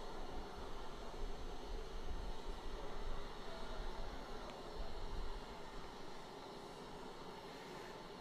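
Steady hiss and low rumble on the onboard audio feed of a Falcon 9 first stage firing its Merlin engines for the boostback burn, easing off a little in the last couple of seconds.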